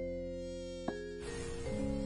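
The high, whining buzz of a mosquito, a cartoon sound effect, coming in a little past halfway, over soft sustained music notes.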